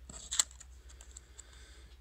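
A single sharp click just under half a second in, followed by faint room tone with a few small ticks.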